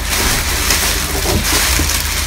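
Plastic bag and bubble wrap crinkling and rustling as a wrapped bundle of metal parts is pulled out of a cardboard box, over a steady low hum.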